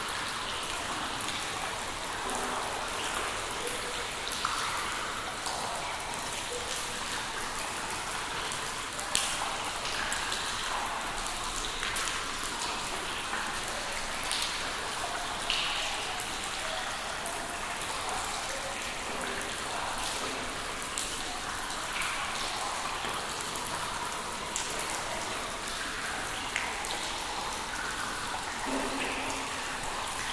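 Water drops falling into pooled water in a cave: a dense, steady patter of drips over a hiss of water, with a few louder single plinks, the loudest about nine seconds in.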